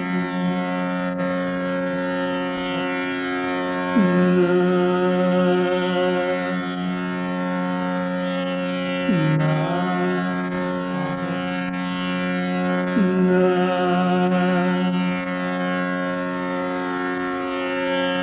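Male Hindustani classical singer holding long notes in Raga Malavati over a steady drone. The voice slides down to a lower note about four, nine and thirteen seconds in.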